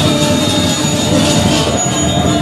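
Balinese gamelan music with several steady held tones over a dense, busy low texture.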